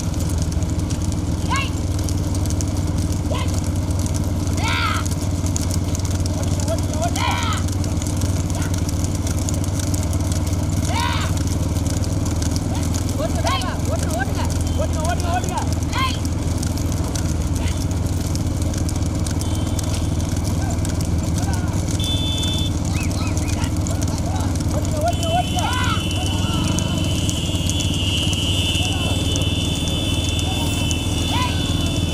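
A pack of motorcycles running steadily at low speed, with men's shouts rising and falling every few seconds. A thin high steady tone comes in briefly past the middle and again near the end.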